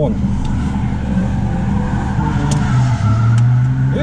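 Car engine idling steadily, its low note dipping slightly and then holding a little stronger near the end, with a couple of faint clicks in the middle.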